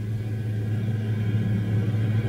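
A steady low hum with a fainter higher overtone, the background drone of an old tape recording, growing slightly louder.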